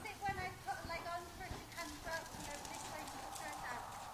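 Pony's hoofbeats on the sand footing of an indoor arena, soft and irregular, with faint talk in the first couple of seconds and a steady electrical-sounding hum coming in about halfway through.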